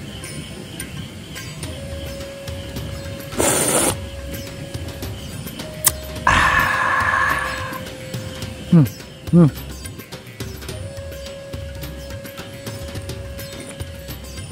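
Someone tasting soup from a spoon: a short slurp, then a longer sip, followed by two short appreciative "hmm"s, the loudest sounds, over faint background music.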